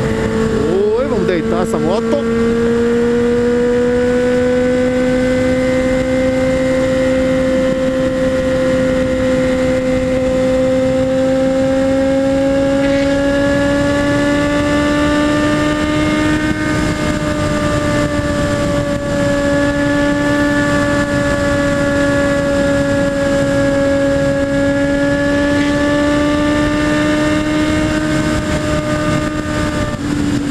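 Honda Hornet 600's inline-four engine pulling at high revs as the motorcycle accelerates to about 178 km/h. Its note rises steadily over the first half and then holds at speed. Heavy wind rush sounds over the helmet-mounted microphone.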